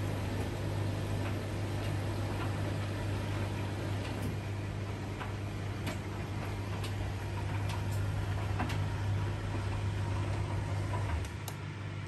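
Washing machine and tumble dryer running side by side, a Beko WTK mid-cycle and an Indesit IDV75: a steady low motor hum with scattered light clicks. The hum drops off about eleven seconds in.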